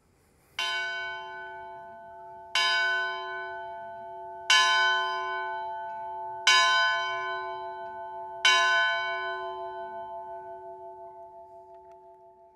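A church bell tolling five times on the same note, a stroke about every two seconds, each ringing on into the next. The last stroke dies away slowly with a pulsing waver.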